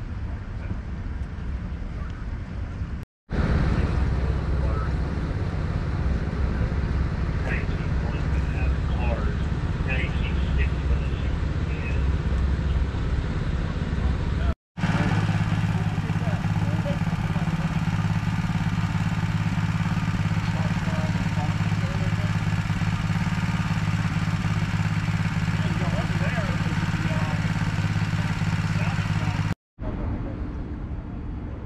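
An engine running steadily with a low, even hum, heard through a series of separate clips that cut to silence briefly about three seconds in and again about halfway through. Faint voices can be heard around it.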